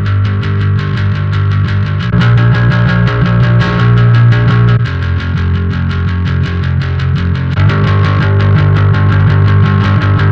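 Distorted electric bass guitar playing a steady run of fast picked notes through the Darkglass Ultra amp plugin. It is first heard on the cleaner Microtubes B7K Ultra model, then switched about three-quarters of the way in to the dirtier, grittier Vintage Ultra model.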